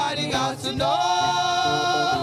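Gospel choir singing into microphones, several voices together, with a long note held from about a second in.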